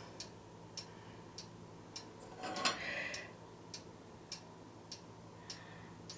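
Faint, steady ticking, evenly spaced at a little under two ticks a second, with a brief soft rustle near the middle as fingers press a damp paper napkin onto wet acrylic paint on canvas.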